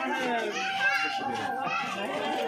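Crowd of women and children talking over one another, with children's voices among them; a steady high tone joins about halfway through.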